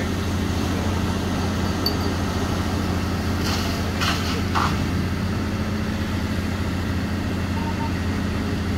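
Aircraft rescue firefighting truck running its engine and water pump at a steady low drone while its turrets spray water, with a rushing hiss over it. A few brief bursts of noise come about three and a half to five seconds in.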